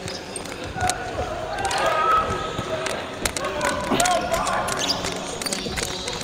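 Basketball bouncing on a hardwood gym court, several sharp knocks at uneven intervals, with players' voices.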